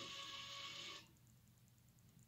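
A faint steady hiss that cuts off sharply about a second in, leaving near silence.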